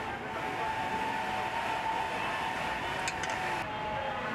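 Steady machine noise with a held tone, its hiss cutting off suddenly near the end.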